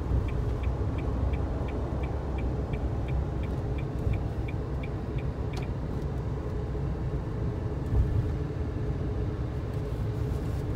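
Steady road and engine rumble inside a moving car's cabin. A turn signal ticks about three times a second and stops about five and a half seconds in. There is a brief bump near the end.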